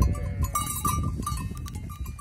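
A flock of sheep crowding close: bells on the sheep clinking and a brief bleat at the start, over a low rumble on the microphone.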